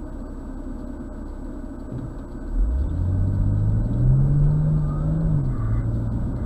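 BMW M240i's turbocharged straight-six engine heard from inside the cabin: a low steady rumble, then about halfway through the engine note climbs under acceleration, holds for a second or so, and drops back a step near the end.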